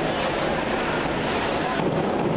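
Steady rushing noise of an indoor pool hall, water noise and crowd chatter echoing together, with no distinct splash standing out.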